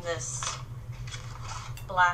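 Light clinks and rustles of art supplies and a sheet of painted paper being handled, over a steady low hum.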